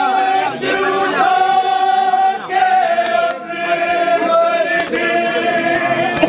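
Men's voices chanting a Muharram mourning lament (noha) together, holding long drawn-out notes.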